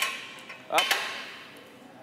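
A barbell being racked in the hooks of a weight rack: one sharp metal clank with a short ring, then a man calls "Up."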